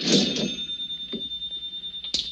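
Mechanical cash register rung up: a short clatter at the start, then its bell rings on in one steady high tone.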